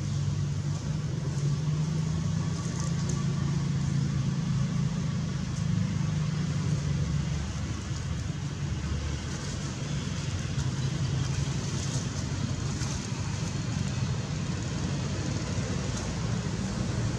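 A steady low rumble like a motor vehicle's engine running, constant throughout with no breaks.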